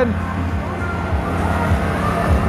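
A pickup truck's engine running at low speed close by, a steady low drone, with voices in the background.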